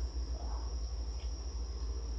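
A cricket trilling on one steady high note, over a low rumble.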